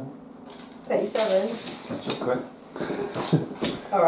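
Brief vocal sounds with no clear words from a person, mixed with light clicks and taps of small objects being handled on a table.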